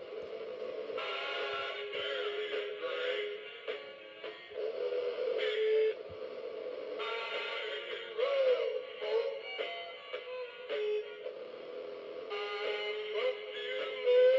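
Battery-powered animated singing cowboy figure playing its song, a male-voiced country tune with instrumental backing, running on low batteries.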